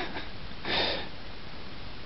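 One short sniff, a quick breath drawn in through the nose, a little under a second in, over a low steady hiss.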